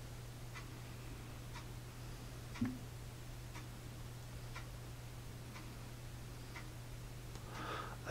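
Quiet room with faint, regular ticks about once a second, like a clock ticking, over a low steady hum. One brief soft thump comes about two and a half seconds in.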